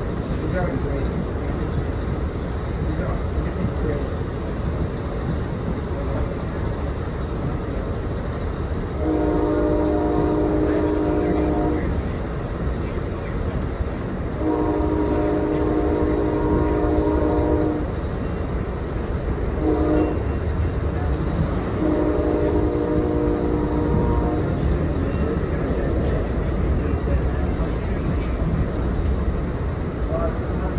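Raised-letter Nathan K5LA air horn on a P40 locomotive sounding the grade-crossing signal: two long blasts, one short, then a final long one, heard from a passenger car behind the engine. The train's steady running rumble goes on underneath.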